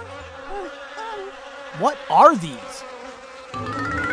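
Flies buzzing, the buzz holding a steady hum while its pitch wavers and swoops, with a loud up-and-down swoop about two seconds in. A rising tone begins near the end.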